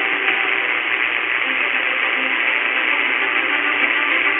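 Mediumwave AM reception on 585 kHz through a CS-106 radio's ferrite rod antenna: a steady hiss of static and interference with faint tones underneath, the audio cut off sharply above about 4 kHz.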